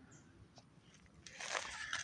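Footsteps crunching and rustling through dry grass and twigs, starting faintly and growing louder from about a second and a half in.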